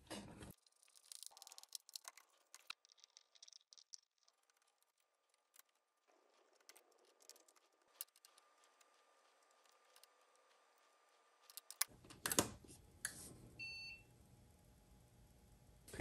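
Near silence broken by faint, scattered clicks and small rattles of wires and a component being handled, with a denser cluster of clicks about twelve seconds in.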